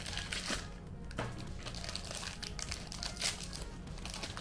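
Foil pouch of a Polaroid 600 film pack being handled and crumpled by hand, giving an irregular crinkling and crackling.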